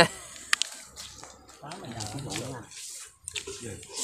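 Quiet voices talking in the background, with a few short clicks, and slurps of hot noodle soup being eaten from a coconut shell near the end.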